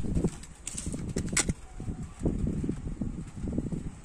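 Plastic blister pack on a toy car's card being handled and cut open: irregular knocks, rustles and scrapes of plastic and card, with a sharp click about a second and a half in.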